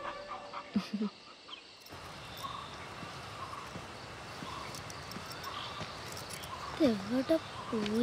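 Faint steady outdoor background hiss. Near the end come a few short vocal sounds that slide up and down in pitch.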